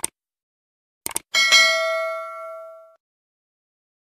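Subscribe-button animation sound effect: a click, then a quick double click about a second in, followed by a notification bell ding that rings out and fades over about a second and a half.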